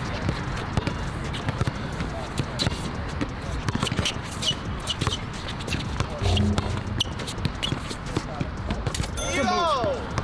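Basketball being dribbled on an outdoor hard court, bouncing at irregular intervals, with players' voices from the game around it.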